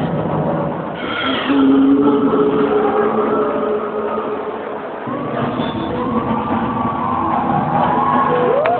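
Loud soundtrack for a stage skit played through the PA speakers: a dense, noisy, rumbling mix with a few held tones and sliding pitches, distorted by the recording phone.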